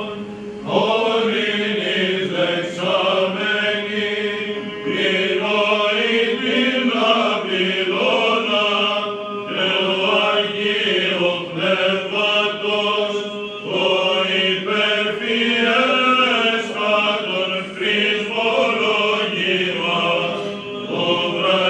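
A group of male cantors singing Greek Orthodox Byzantine chant, the melody moving in long phrases over a steady low held drone (the ison).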